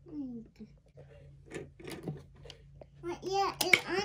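A child's voice speaking and babbling. Near the end comes a single sharp click, as a plastic ball is pushed onto a toy cannon's barrel to load it.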